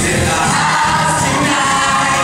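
A large glee choir singing a pop song live into microphones over amplified music, with a low bass beat pulsing under the voices at the start.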